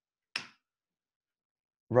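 A single short, sharp click about a third of a second in, during an otherwise silent pause. It comes just as the presentation slide is being advanced. Speech resumes right at the end.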